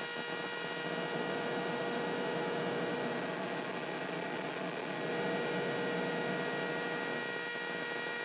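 Serge modular synthesizer output: a noise source and a sawtooth oscillator combined through a comparator, giving a steady buzzy pitch with its overtones heard through a rough wash of noise. The pitch is heard all the time.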